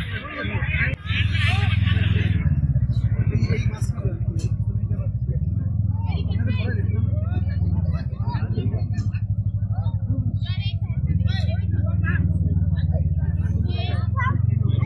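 A loud, steady low rumble that starts about half a second in, under faint voices of a crowd.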